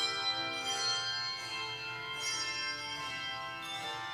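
Handbell choir playing a slow piece: struck bell notes ring on and overlap in sustained chords, with a new strike every second or so.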